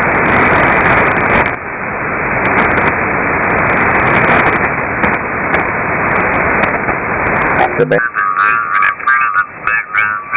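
Shortwave receiver static: a web SDR in lower-sideband mode on the 80 m band giving a steady hiss of band noise while being tuned between stations. About eight seconds in, an off-tune sideband voice breaks in, high-pitched and garbled.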